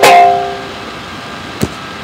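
Banjo's final strummed chord, struck right at the start and ringing out, fading away within about a second. A single short knock follows about a second and a half in.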